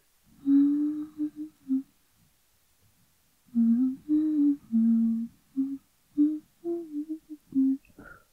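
A woman humming a slow melody with her mouth closed, in two phrases of short held notes separated by a pause of about two seconds, the second phrase longer.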